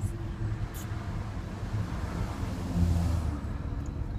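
Car cabin noise while driving: steady low engine and road rumble with tyre hiss, swelling briefly a little past the middle.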